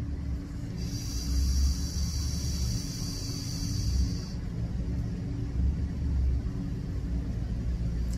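Box-mod vape with a tank atomizer hissing during a long draw of about three and a half seconds, starting about a second in, over a steady low rumble.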